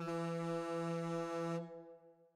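End-of-round signal from a workout interval timer: one steady, low horn tone, held about a second and a half, then fading out. It marks the end of the five-minute round.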